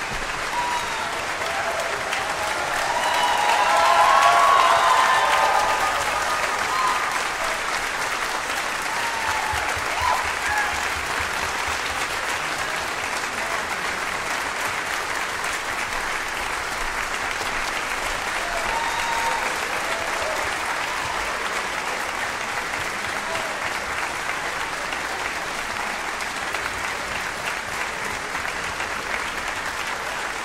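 Sustained audience applause in a concert hall, swelling to its loudest with voices calling out about four seconds in, then continuing steadily.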